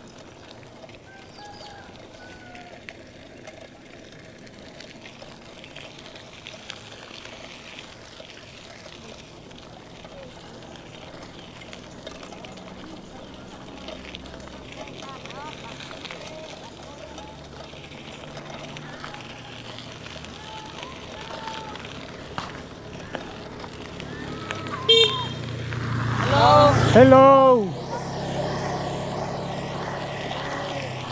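Steady road noise from a bicycle ride on a dirt road. A motorbike engine grows louder from about ten seconds in and passes close near the end, with a sharp loud sound and a brief voice-like call as it goes by.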